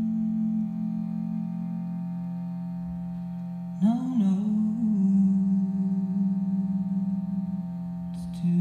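Shruti box drone: a steady chord of reeds sounding throughout. Over it a woman sings long held notes, one fading out in the first two seconds and a new one entering with a bend in pitch about four seconds in and held nearly to the end.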